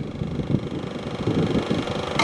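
Low, uneven engine rumble.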